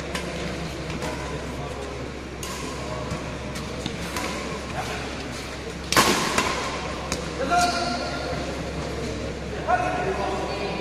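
Badminton rackets striking a shuttlecock in a doubles rally: several sharp smacks spread through the rally, the loudest about six seconds in and ringing in a large hall, over a steady murmur of voices. Players' shouts and voices come in after about seven and a half seconds and again near the end.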